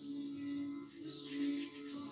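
Background music of slow, sustained tones, with the light scratchy rubbing of a paintbrush scrubbing surplus gold leaf off a canvas. The rubbing is strongest in the second half.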